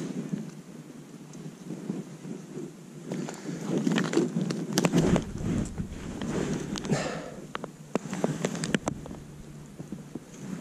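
Wind buffeting the camera's microphone, deepening into a heavier rumble about halfway through, with scattered clicks and crunches of boots stepping on wet mud, stones and crusted snow.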